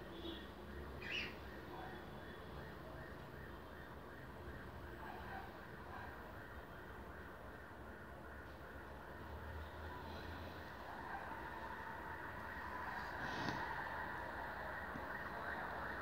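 Faint, steady background noise, with a brief faint high sound about a second in and another near the end.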